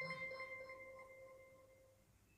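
A single soft bell-like chime rings once and fades away over about two seconds.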